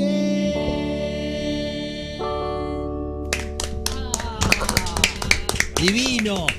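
Final chords of a song held on a Nord Electro 6 stage keyboard, shifting twice and fading, then clapping breaking out about three seconds in and growing.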